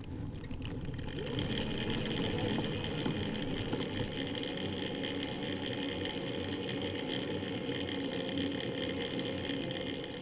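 Steady riding noise from a recumbent trike rolling along an asphalt bike path: tyre rumble and wind rushing over the mounted camera, with a faint steady whine.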